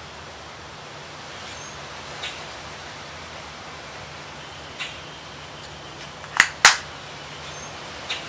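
Steady background hiss, then about six and a half seconds in, two sharp clicks a quarter second apart as a makeup compact's lid is snapped shut.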